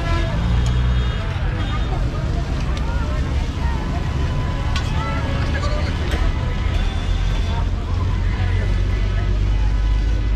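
Busy street ambience: people talking over a steady low rumble of vehicle engines and traffic, with a few sharp clicks.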